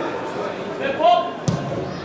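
A football kicked once, a sharp thud about one and a half seconds in, with players shouting on the pitch just before it.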